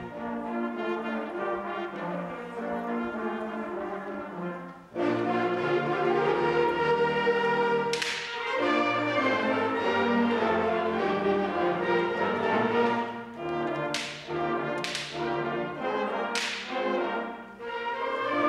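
School concert band playing, led by sustained brass chords. The full band comes in suddenly and loudly about five seconds in. Sharp percussion hits ring out about eight seconds in and three more times near the end.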